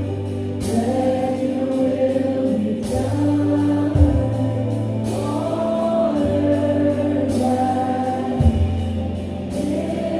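Live worship band playing a song: singing over electric guitar, acoustic guitar and drums, with sustained low notes underneath. A cymbal crash lands about every two seconds, with steady hi-hat ticks between.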